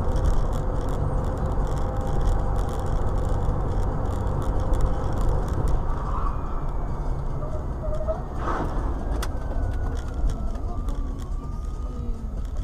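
Steady road and engine rumble of a car travelling at highway speed, picked up by a dashcam microphone inside the cabin, with a brief thump a little past the middle.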